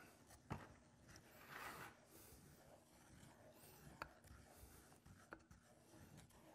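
Faint scraping of a stick stirring melted lure in a small pot, with a few light knocks against the pot.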